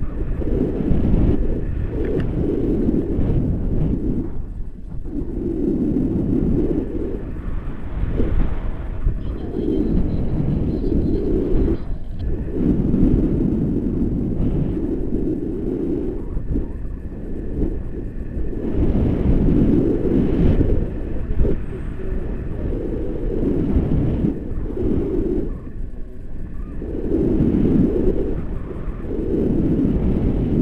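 Wind buffeting the camera microphone in the airflow of a tandem paraglider in flight: a loud, low rumble that swells and fades in gusts every few seconds.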